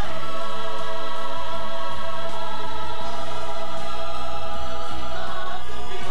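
A chorus of stage performers singing together in long held notes over music, the sound dulled by a VHS tape transfer.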